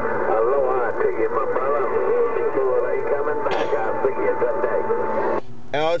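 Another station's voice received over an HR2510 radio tuned to 27.025 MHz, distorted and hard to make out, with a steady whistle tone under it. There is a short burst of static about three and a half seconds in. The received signal cuts off suddenly near the end.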